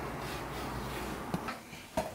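Quiet room noise with a steady low hum, which drops away about a second and a half in; a few faint clicks near the end.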